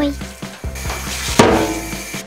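Hand-held shower spraying water onto a cat in a bathtub, a hissing rush of water over background music, with a sudden louder burst partway through.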